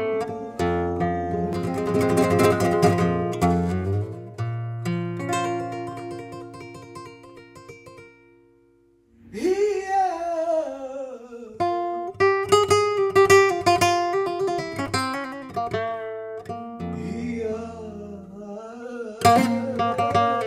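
Flamenco guitar playing an Arabic-flavoured passage of picked runs and chords, the notes ringing out and dying away to near silence about eight seconds in. Then a singer enters with a long, wavering, gliding vocal line over the guitar, which carries on to the end.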